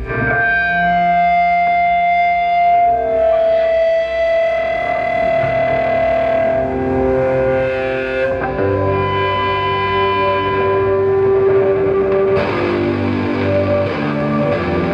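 Electric guitars through distortion and effects, held in long sustained notes that change pitch every few seconds, without a drumbeat.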